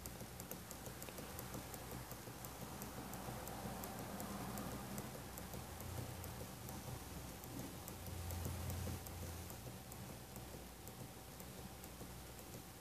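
Quiet room tone: a low steady hum with a faint thin tone and a row of faint, rapid, evenly spaced high ticks.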